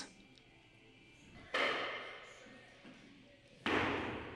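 A weightlifter's forceful exhalations during a heavy barbell back squat set: two sudden breaths about two seconds apart, each fading over about a second, with quiet between.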